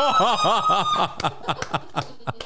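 Two men laughing hard, with a quick run of 'ha-ha' pulses in the first second, then breathier laughter broken by a few sharp hand claps.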